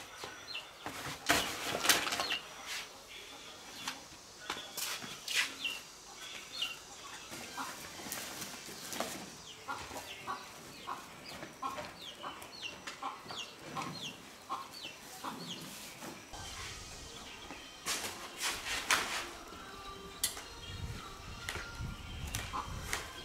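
Chickens clucking amid repeated short knocks and rustling as a rope strap is pulled tight over plastic sacks of scrap on a tricycle's cargo bed. A low steady rumble comes in about sixteen seconds in.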